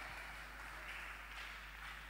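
Faint room tone in a pause of an amplified voice: a steady low hum and a soft hiss, most likely from the microphone and sound system.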